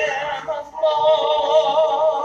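A woman singing a hymn with no audible accompaniment, holding long notes with vibrato; one note breaks off about two-thirds of a second in and a new held note begins.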